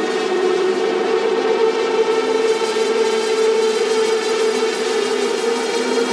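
Techno music in a breakdown: a sustained, droning synthesizer chord held steady, with no kick drum or beat.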